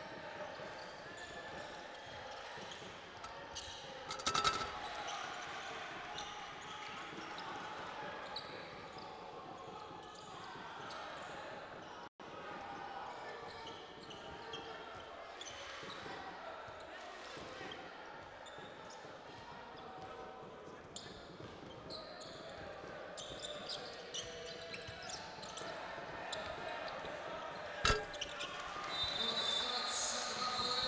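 Basketball arena sound during live play: a ball dribbling on a hardwood court, sneaker squeaks, and shouting voices over a low crowd murmur. A louder bang comes about four seconds in, and a short high tone sounds near the end.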